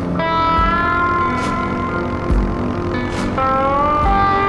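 Background music led by a slide guitar, playing long sustained notes that glide up in pitch, over a slow, soft beat.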